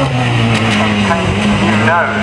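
Mallock Mk18BW hillclimb car's Ford Crossflow four-cylinder engine at full throttle, passing close by: its note drops in pitch as the car goes past, then runs on steadily as it pulls away up the hill.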